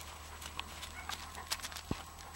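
Crunching of loose gravel and grit under moving feet: an irregular run of small clicks and scrapes, with a couple of sharper ticks about halfway through and near the end.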